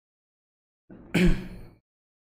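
A man's short, breathy sigh, once, about a second in.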